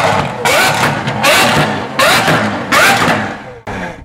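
A car engine revved hard several times in a row, about five sharp rising revs well under a second apart, easing off near the end.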